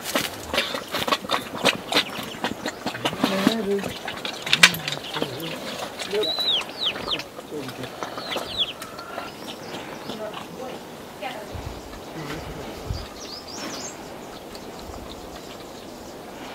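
A quick run of sharp clicks and knocks for the first few seconds, the loudest about halfway through it. Then a few short, high chirps that dip in pitch, from a bird, with faint voices in the background.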